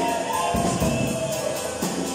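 Live worship song: acoustic guitar strummed, with a sung melody over it and a steady shaken percussion beat keeping time.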